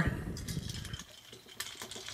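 Hard plastic parts of a TFC SD Hercules combiner figure being handled and plugged together: a few light clicks and some rubbing as pieces are pressed into place.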